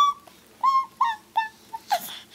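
A small child's short, high-pitched squeals, four or five in quick succession.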